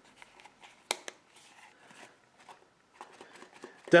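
Leather knife sheath and fixed-blade knife being handled, with faint rustling and a sharp click about a second in, followed by a weaker one.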